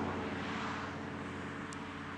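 Steady outdoor background noise, a hissing rush like distant traffic, with the sustained chords of the music score fading out underneath. A single brief faint tick comes near the end.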